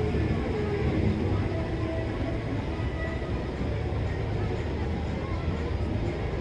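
Minibus engine running as it drives slowly past, a steady low rumble, with crowd chatter around it.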